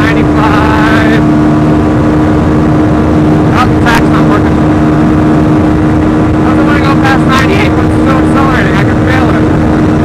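Yamaha WR supermoto's single-cylinder four-stroke engine held at high revs on a top-speed run, its note steady and unchanging, with wind rush on the helmet camera.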